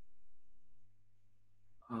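Faint steady hum under quiet room tone, then a man's held "um" starting near the end.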